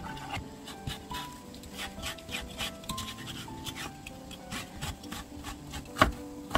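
Kitchen knife scoring a squid body on a plastic cutting board: quick, light taps of the blade against the board, roughly three or four a second. Soft background music plays underneath.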